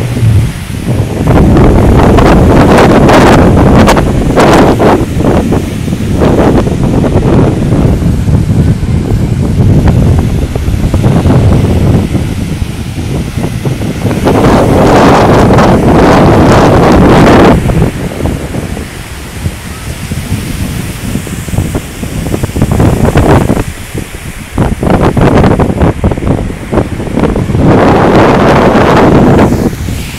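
Wind gusting across a phone's microphone in loud, uneven rushes, with ocean surf breaking on the beach underneath.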